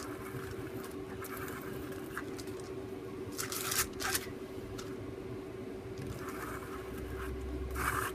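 Modelling paste being scooped up and scraped across a plastic stencil: soft intermittent scrapes, with a couple of sharper strokes about three and a half to four seconds in. A faint steady hum runs underneath.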